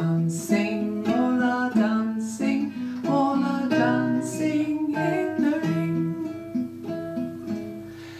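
A woman singing a children's circle-game song in English, accompanied by a plucked guitar; the line tails off briefly near the end.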